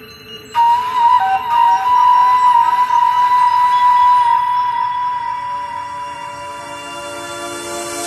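Electronic dance music in a beatless breakdown: a long, held, flute-like synth lead comes in about half a second in over a soft pad, with a shorter repeating note beneath it.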